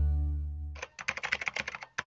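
A held music chord fades out, then a quick run of keyboard typing clicks, about ten in a second, with one last click at the very end.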